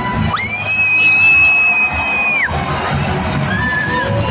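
A child's high-pitched scream held for about two seconds, then a shorter, lower scream near the end, over show music and crowd cheering in a large arena.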